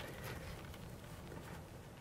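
Faint rustling of hands working loose soil and roots around a young apple tree's root ball, with a few soft crackles.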